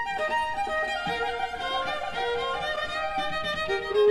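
A Stradivari cello and a violin playing a classical duo: a held, wavering melody line sounds above while the cello's lower bowed notes move beneath it.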